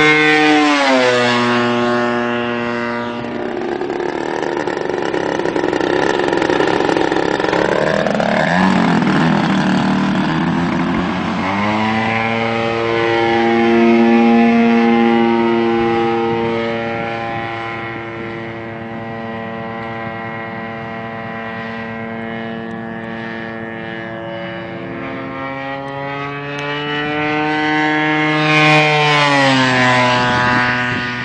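O.S. GT55 two-stroke gasoline engine driving the propeller of an RC model airplane in flight, its note rising and falling as the throttle changes and the plane moves about. The pitch drops sharply as the plane passes close about a second in, and again at the very end.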